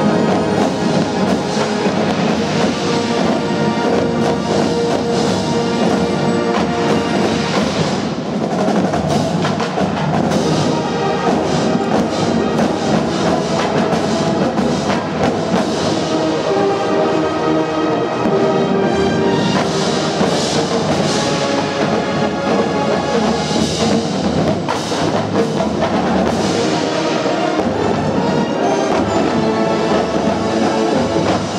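Marching band playing: brass instruments carrying sustained chords and melody over a marching drum line of snare, tenor and bass drums.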